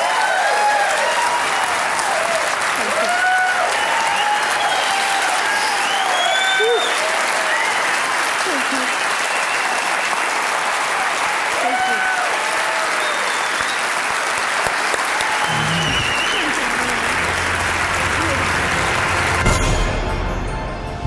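A large audience applauding loudly and steadily, with whoops and cheers rising out of the clapping. In the last few seconds a low, steady music tone comes in under the applause.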